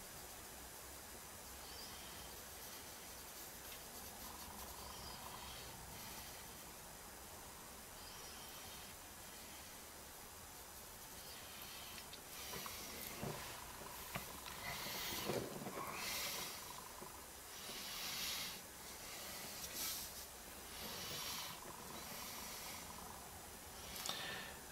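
3B graphite pencil scratching on Bristol board in a series of short, irregular shading strokes, about one a second, starting about halfway through. Before that there is only a faint steady hiss.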